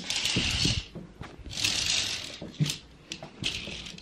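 A curtain being drawn closed along its rail: the runners slide in the track in two short runs, each under a second, followed by a few light clicks.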